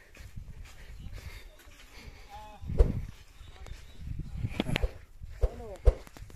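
Faint, distant voices calling out briefly twice, over low rumbling, with a few dull knocks; the loudest knock comes about three seconds in.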